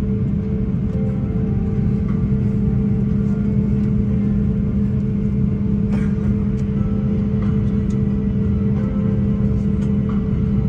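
Airbus A330 cabin noise while taxiing after landing: the engines running at idle as a steady low rumble with a constant hum.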